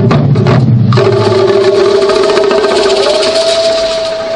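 Ensemble taiko drumming, a fast run of strokes on the big barrel drums, stops abruptly about a second in. A long held pitched note then sounds over an even hiss, with a second note rising in pitch near the end.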